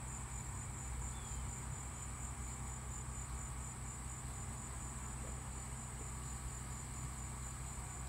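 Insects trilling steadily outdoors, a continuous high-pitched pulsing buzz, over a faint low hum.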